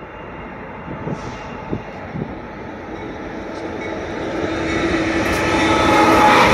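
Approaching Union Pacific diesel freight locomotives: the engine drone and rail rumble grow steadily louder over the last few seconds, with a steady low tone coming up near the end. A few short knocks sound about one to two seconds in.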